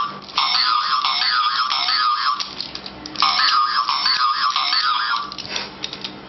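An electronic warbling tone like an alarm, sounding in bursts of about two seconds with short gaps between them.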